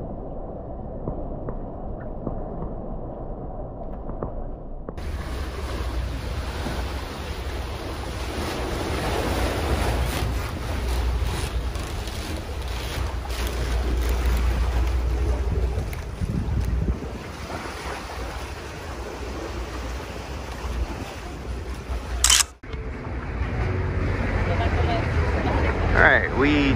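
Water sloshing close to the microphone, muffled, for about five seconds. Then steady wind buffeting the microphone, with water rushing past a sailing catamaran's hulls. A brief sharp click comes near the end.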